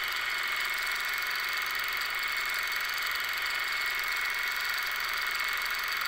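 Longarm quilting machine running steadily as it stitches free-motion quilting: an even mechanical whir with a thin steady high-pitched tone over it.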